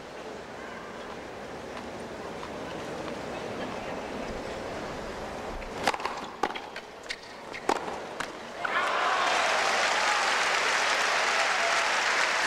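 Stadium tennis crowd murmuring, then a short rally: a serve and a few racket strikes on the ball, about half a second to a second apart. The point ends and the crowd breaks into loud applause with some cheering, which is the loudest part.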